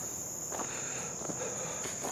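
A steady, high-pitched drone of insects such as crickets, holding one even pitch throughout, with a few faint clicks.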